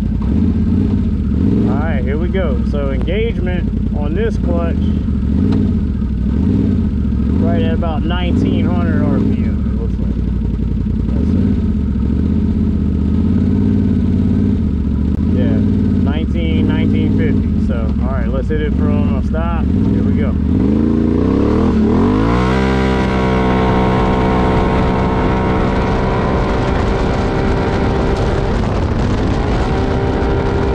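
Can-Am Outlander 850 XMR's V-twin engine idling, with an indistinct voice over it at times. About 22 seconds in it is put to full throttle from a stop: engine pitch climbs quickly, then holds steady while the ATV gathers speed, typical of the CVT clutch holding engagement rpm during a launch test.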